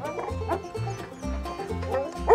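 Background music with a steady bass beat, with a dog barking faintly once or twice.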